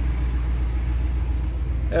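Pickup truck's 6.4 L Hemi V8 idling: a low, steady hum.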